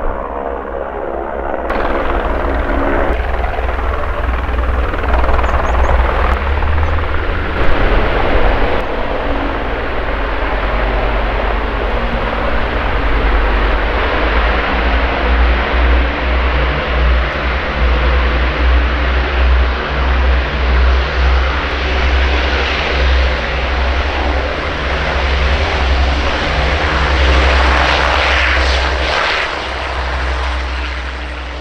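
A helicopter flying low overhead with a pulsing rotor beat, mixed with the steady drone of the Avro Lancaster's four Rolls-Royce Merlin piston engines.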